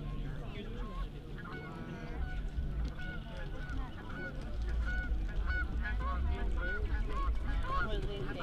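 Geese honking, a long run of short calls. Under them, a low rumble swells from about two seconds in.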